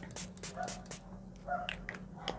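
Makeup setting spray misted onto the face in a quick run of short hissing spritzes, about six or seven a second, stopping about a second in. Later come two faint, brief pitched sounds.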